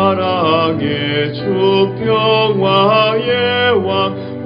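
A man singing a Korean Protestant hymn in slow, held phrases over a sustained instrumental accompaniment.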